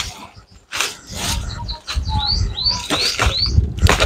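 A bird chirping, four short, quick notes in the second half, over several sharp knocks and a low rustling rumble.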